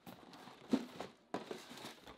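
Cardboard shoebox being handled and its lid lifted off: a few soft knocks and scrapes of cardboard.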